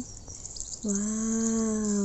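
A woman's long drawn-out exclamation of "wow", starting almost a second in and held steady, with a steady high-pitched hiss behind it.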